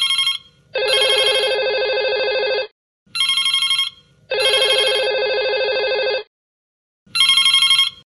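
Panasonic corded desk telephone ringing with an electronic trill. Each ring is a short high burst followed by a longer burst with a lower tone under it, and the pattern repeats about every three and a half seconds, twice and then again near the end.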